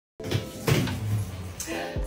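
A door being handled: a few sharp clicks and knocks, with background music underneath.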